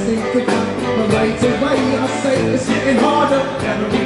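Live reggae rock band playing loud and steady: electric guitars over a regular drum beat.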